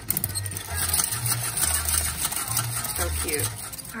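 A mechanical toy table-tennis game running, giving a rapid, steady clicking clatter from its works and the players' paddles.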